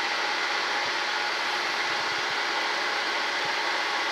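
Milling machine spindle running steadily as a No. 36 drill bit bores a tap hole for a 6-32 set screw into a brass workpiece, a constant machine hum with a thin high whine.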